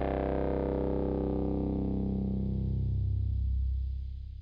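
Ambient electronic music: a sustained, distorted synthesizer drone whose tone steadily darkens as its upper overtones fall away, starting to fade out near the end.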